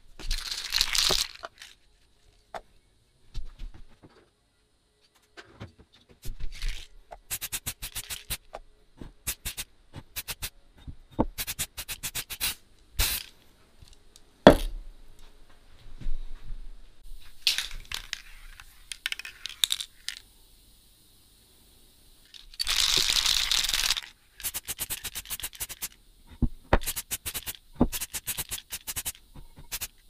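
Aerosol spray paint hissing out of a can in two bursts, one at the start and one about 23 seconds in. Between them come many rattling clicks and handling knocks, with one loud click about halfway through.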